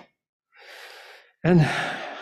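A man's short, breathy in-breath, a gasp-like inhale lasting under a second, taken in a pause between sentences before he goes on speaking.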